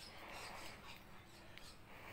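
Faint, soft breath blown through a slotted kitchen utensil wet with bubble mixture, a gentle hiss of air lasting about a second.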